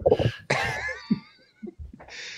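Men laughing: a short burst, then a longer wavering laugh that trails off into a few short breaths.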